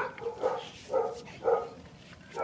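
A dog barking: four short barks, about two a second.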